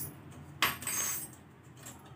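Stainless steel spice box (masala dabba) clinking as it is handled: a sharp metallic clink about half a second in with a brief ring, then a lighter clink near the end.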